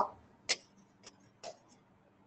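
A few light ticks of a stylus tapping on a touchscreen while writing. The clearest comes about half a second in and another about a second and a half in, with fainter ticks between.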